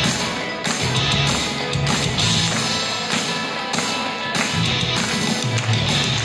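Loud idol-pop backing music with a steady beat, played over a stage PA for a live dance-and-vocal performance.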